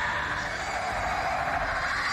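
Steady, even drone from the TV episode's soundtrack, with no speech.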